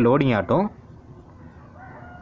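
A man says one word, then the background is quiet except for a faint, brief pitched animal call near the end.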